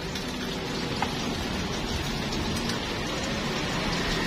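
Steady sizzling of food frying in the wells of a cast-iron multi-well pan on a gas burner.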